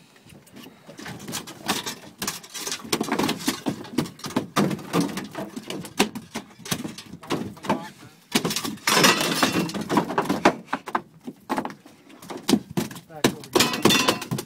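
Halibut being hauled aboard and thrashing on the boat deck: a busy run of knocks and thumps, with a louder, rushing flurry about nine seconds in.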